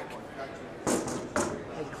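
A wooden guitar body blank set down flat on a machine's metal top, giving a single thud about a second in.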